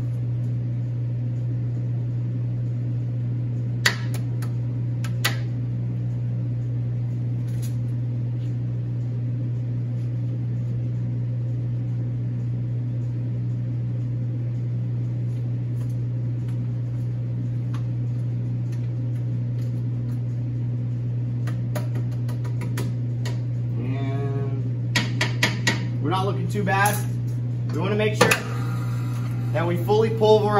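Steady low hum of a commercial kitchen motor, with a spatula knocking twice against the steel stand-mixer bowl a few seconds in as the bowl is scraped down. A voice and more clatter come in near the end.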